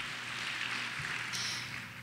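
Audience applauding, an even patter that thins out toward the end.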